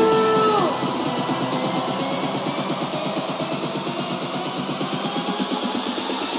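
Electronic dance music played live from a DJ set. A held synth note bends down and ends within the first second, then a fast, even drum beat runs on with the bass cut out.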